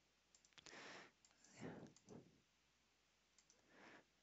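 Near silence, with a few faint computer mouse clicks.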